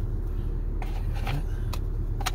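Steady low drone of a car running at idle, heard inside the cabin. A few short crinkles and clicks of trading cards and a foil pack being handled come about a second in and again near the end.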